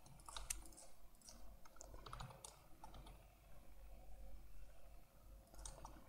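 Faint, scattered clicks of a computer mouse and keyboard at irregular intervals, over a faint low hum.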